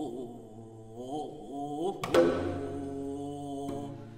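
Haegeum, the Korean two-string bowed fiddle, playing a slow melody with wavering, sliding pitches. About two seconds in, a sharp accompanying stroke comes in and sustained ringing notes follow.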